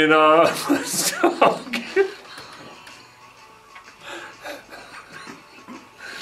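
A sung line of a Christmas pop song breaks off about half a second in, turning into laughter and chuckling. Quieter, scattered voice sounds follow.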